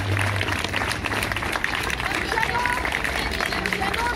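Crowd applauding with voices and a few short calls mixed in, as a choir's song ends; a low held note dies away in the first second or so.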